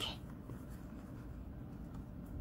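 Faint, soft rubbing and rustling of hands stuffing a coiled wired-earphone cord into a small crocheted yarn bag.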